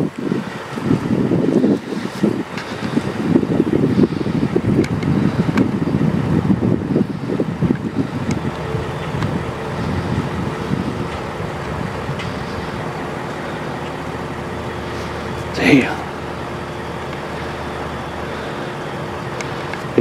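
A motor vehicle's engine running steadily under rough wind noise on the microphone, settling into a steadier hum in the second half, with one short rising-and-falling squeal about sixteen seconds in.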